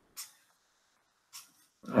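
Near silence broken by two short, soft breaths about a second apart.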